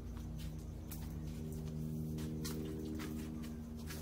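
A steady low hum with several steady tones, with a few faint scattered clicks over it.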